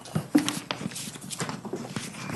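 Paper plan sheets being handled and leafed through close to a microphone: irregular rustles, clicks and knocks.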